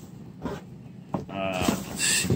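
A man's voice holding one drawn-out, steady-pitched hum or 'uhh' over the last moments, with a couple of light clicks of handling before it.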